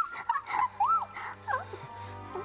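A woman's high-pitched giggling squeals: several short cries that rise and fall in pitch, mostly in the first second and a half, over quiet background music.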